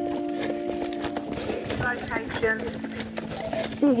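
Fast, rhythmic footsteps of people running on a paved path, a steady run of short knocks.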